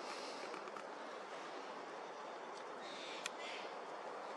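Faint, steady outdoor background hiss with no distinct source, and one brief faint click a little over three seconds in.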